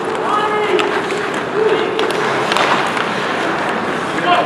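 Ice hockey play in a rink: skates scraping the ice and a few sharp clacks of sticks and puck, with drawn-out shouted calls from voices on or around the ice.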